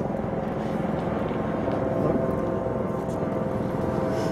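Steady background rumble of distant engine noise, with a few faint steady hums running through it.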